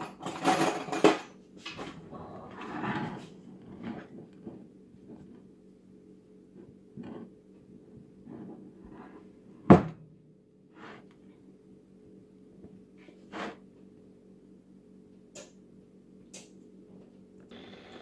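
Scattered light clicks and taps of pie-crust edging: a fork and fingers pressing the dough rim down onto a pie dish. Soft handling noise in the first few seconds, then sparse taps, with one sharp click just before halfway the loudest.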